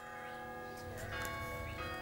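Church bells ringing, with a new bell sounding about every second and the tones overlapping as they ring on.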